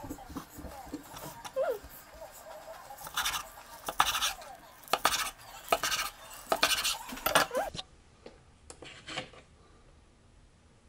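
Kitchen knife slicing through sushi rolls and knocking on a wooden cutting board: about seven sharp knocks from about three seconds in, then only a few faint clicks near the end.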